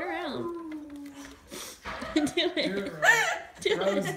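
Young women's voices, excited and mostly without clear words: one long held vocal sound at the start, then more voices toward the end.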